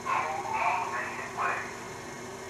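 Indistinct voices in a few short phrases, too unclear for any words to be made out, fading to a steady low background near the end.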